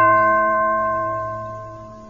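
A single bell-like chime, the read-along's page-turn signal, rings out and fades away over about two seconds.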